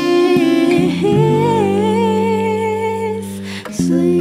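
Acoustic guitar accompanying a singing voice: strummed chords, then a long held note with vibrato over a ringing chord, a short break near the end, and the guitar strumming again.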